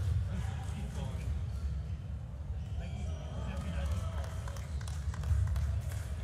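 Large-hall ambience during a fencing bout: a steady low rumble with indistinct voices around the venue, and light taps and thuds of the fencers' footwork on the piste.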